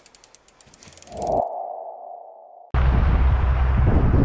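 Logo-animation sound effect: a quick run of clicks, then a sustained tone that stops suddenly. About three seconds in, a loud, steady low rumble cuts in.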